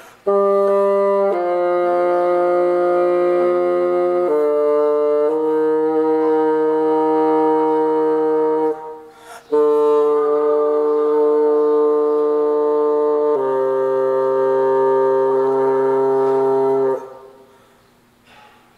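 Solo bassoon playing long sustained notes that step to a new pitch every few seconds, with a short break about nine seconds in, then stopping shortly before the end.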